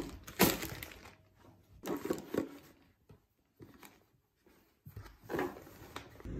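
Plastic and glass food containers being handled and packed into a canvas tote bag. A sharp knock comes about half a second in, then short bursts of rustling and handling, with a quiet gap in the middle.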